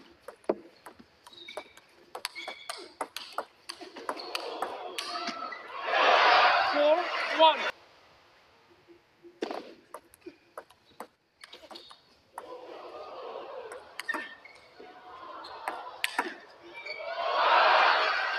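Table tennis rallies: sharp clicks of the ball off the bats and table in quick succession. Between rallies there are swells of crowd noise, loudest about six to seven seconds in and near the end.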